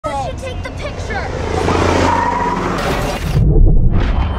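Dramatic series-clip audio: brief voices or cries, then a swelling rush of noise that cuts off abruptly about three seconds in, followed by a deep low rumble.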